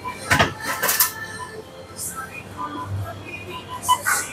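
Convenience-store counter sounds: a quick run of hard clattering knocks about half a second to a second in, over background shop music and distant chatter.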